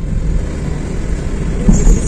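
Car driving along a road, heard from inside the cabin: a steady low rumble of engine and tyre noise, with a briefly louder bump near the end.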